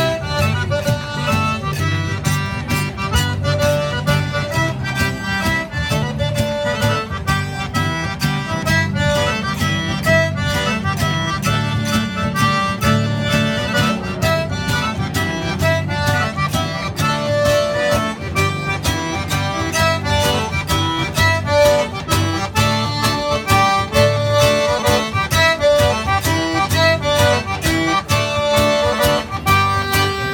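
Zydeco band playing a waltz live, the accordion leading over acoustic guitar with a steady beat.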